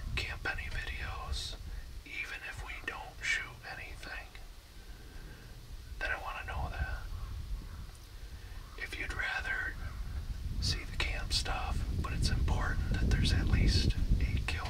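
A man's whispered speech, hushed and breathy, with a low rumble underneath that grows stronger toward the end.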